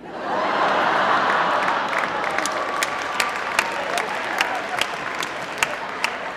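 A large audience applauding and laughing, the noise swelling at once and slowly thinning, with single claps standing out as it dies down.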